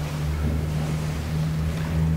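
Steady low hum with an even hiss behind it: the background noise of the lecture-hall recording, with no speech.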